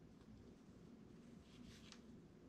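Near silence over a low room hum; near the end, a brief faint scratching of a pen tracing a line on an upholstery pattern piece.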